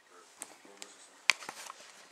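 Plastic bag and packaging being handled: rustling with several sharp clicks and knocks, the loudest just past halfway, over faint background talk.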